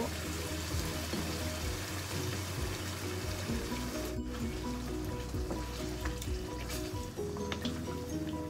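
Background music over a frying pan of chicken and vegetables sizzling on a gas burner, with water poured into the pan from a plastic measuring jug about halfway through.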